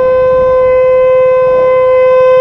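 Motorcycle horn held down in one long, steady single-tone blast: a warning at a car running a red light across the rider's path.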